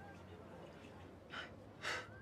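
A woman gasping: two short, sharp intakes of breath about half a second apart in the second half, the second louder.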